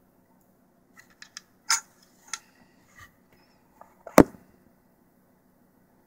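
Light clicks and taps from fingers working a tiny plastic 1/6-scale pistol magazine and its removable bullet, with one sharp click a little after four seconds in.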